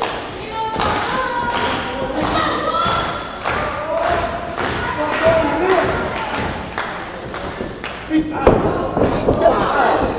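Repeated thuds of wrestlers' boots and bodies on the ring canvas as they circle and lock up, heaviest about eight and a half seconds in, under indistinct voices.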